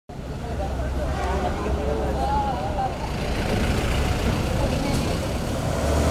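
Outdoor street ambience: a steady low rumble of road traffic with people's voices in the background.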